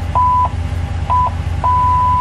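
Dodge Ram's rear park-assist sensor chime sounding in reverse: two short beeps, then an unbroken steady tone from about a second and a half in, the warning that an obstacle is very close behind.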